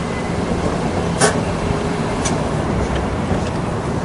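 Steady low rumble of vehicle and traffic noise with a low hum, and two brief clicks about one and two seconds in.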